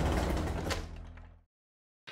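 Tail of a short intro logo sting: sustained low tones with one sharp hit, fading out about halfway through and then cutting to dead silence.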